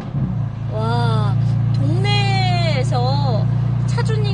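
Stage-3 JB4-tuned BMW M4's twin-turbo straight-six idling steadily with its exhaust valves open, heard from inside the cabin as a deep, even drone that settles in about half a second in.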